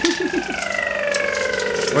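A person's voice making a long, high, wavering whine that slowly falls in pitch, like a siren, with a few short chuckles near the start and laughter breaking out at the end.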